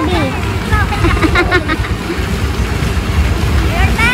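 Women's voices talking during the first second and a half and again near the end, over a continuous low rumble.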